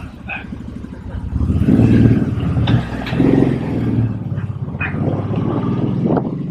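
Motorcycle engine idling, then pulling away from about a second and a half in. It revs up in two rising swells, then runs steadily under way.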